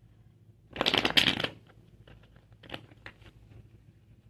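Tarot cards being shuffled: a loud, dense flurry of rapid card flicks about a second in, lasting under a second, followed by a few softer scattered card clicks.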